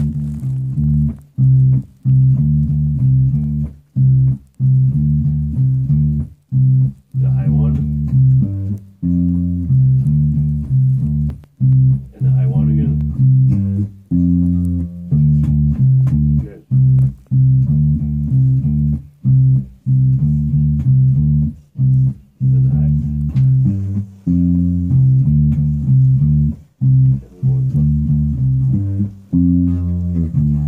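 Electric bass guitar playing a looping bass-line riff: runs of plucked low notes broken by short stops every second or two, the same pattern repeated again and again.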